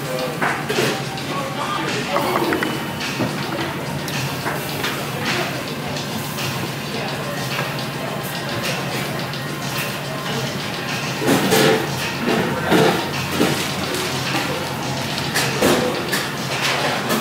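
Busy restaurant ambience: background music and people talking, with the voices growing louder about two-thirds of the way through, plus a few short knocks.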